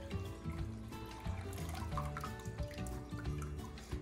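Rinse water trickling out through the mesh lid of an upturned sprouting jar into a stoneware bowl. Background music with held notes and a low beat plays over it.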